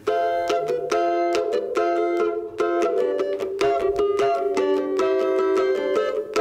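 Cavaquinho strummed alone in a quick samba rhythm, playing the opening chords of a song.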